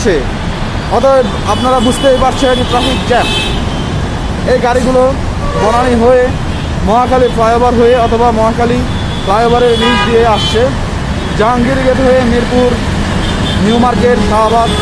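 A person's voice over the steady noise of congested road traffic.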